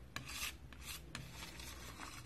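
Palette knife scraping and smearing thick paint: several short, raspy strokes, the loudest about half a second in.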